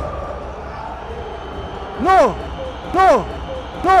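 Steady murmur of a stadium crowd, then a man shouts "No!" three times, about a second apart, each shout rising and falling in pitch.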